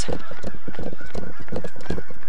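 Geese honking faintly in the background, under the louder rumble and knocks of wind and movement on a jogging camera's microphone.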